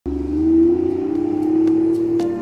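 Toyota Soarer JZZ30 2.5GT-T's 1JZ-GTE twin-turbo inline-six running as the car drives off, a steady exhaust note that rises a little in pitch in the first half second and then holds.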